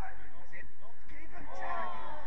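Men's voices calling out across a football pitch, with one louder call near the end, over a steady low rumble.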